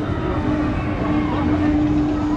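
Fabbri Eclipse/Contact thrill ride running, heard from a seat on board: a steady hum holds one pitch over a dense low rushing noise.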